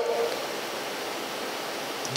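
A steady, even hiss fills a pause between spoken sentences, with the tail of a man's word fading out at the very start.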